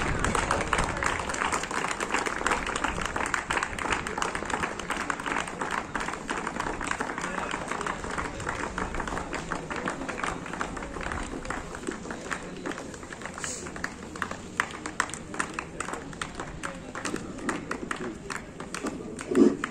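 A group of people clapping in welcome, dense at first and thinning out to scattered claps toward the end, with voices chattering underneath.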